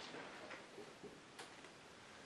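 Near silence: room tone with a single faint click about one and a half seconds in.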